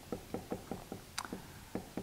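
Dry-erase marker writing letters on a whiteboard: a run of soft, quick, irregular taps, about four or five a second, as the marker strokes touch the board, with one sharper click about a second in.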